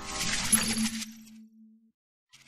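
A sound effect for a logo animation: glittering high tones over a low steady hum. It swells in and the high part fades after about a second and a half, and the hum cuts off just before the end.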